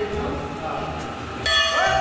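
Devotional temple music: sustained ringing bell tones over a steady drum beat, with a louder strike about one and a half seconds in as singing comes in.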